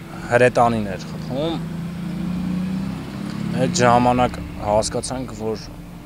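A man speaking Armenian in short phrases with pauses, over a low steady hum that is loudest in the gap between his phrases.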